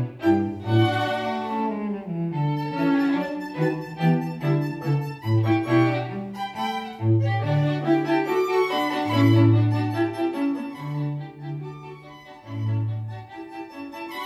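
A live string quartet of violins and cello playing a classical piece, with the cello's low notes standing out under the violins' melody. The music softens briefly near the end.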